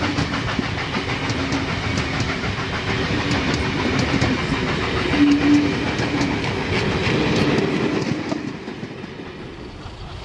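Vintage passenger carriages rolling past at close range, their wheels clicking over rail joints in a steady run, with a low whining tone underneath. The sound fades away about eight seconds in as the train draws off.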